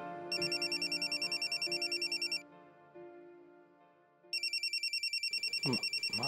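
A phone ringing with an electronic trilling ringtone, a fast warble of about ten pulses a second, in two bursts of about two seconds with a two-second pause between them: an incoming call.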